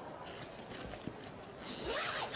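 A bag's zip being pulled open, a short rasping stretch that is loudest near the end, over faint background noise.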